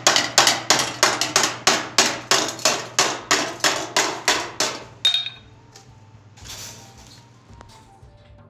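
Hammer blows on a hot 18-gauge brass sheet held over a steel ball stake, a steady run of about three strikes a second that stops about five seconds in. This is raising: working the dome from the outside, which compresses and thickens the edge of the metal.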